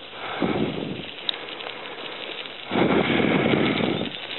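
Bicycle rolling along a gravel trail, its tyres crunching as a steady rustling noise that swells louder about half a second in and again from about three seconds in.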